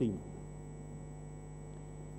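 Steady electrical hum from the chamber's microphone and sound system: several steady tones held at an even level, with no change through the pause.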